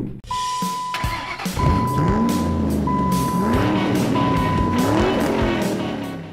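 A channel intro sting: music with car sound effects, an engine revving up and down several times, under a steady high electronic tone that breaks off three times.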